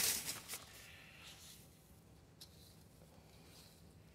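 Hand mixing perlite into potting soil: a brief gritty rustle at the start, then mostly quiet with a few faint light scratches.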